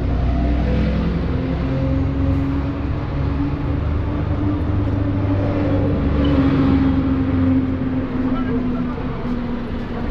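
Street traffic on a busy road: a motor vehicle engine running close by with a steady low hum, under the general noise of the street and passers-by's voices.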